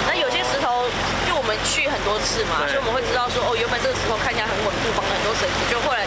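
Speech: a woman talking, over a steady low background rumble.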